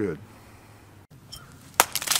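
A single sharp crack near the end, like an impact or a shot, following the tail of a man's spoken word.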